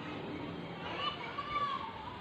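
Children's voices, with one high voice rising louder for about a second midway.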